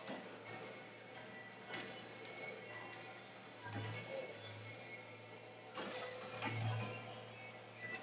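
Hydraulic log loader running, heard from inside its cab: a low engine hum that swells several times as the boom works, with a few knocks.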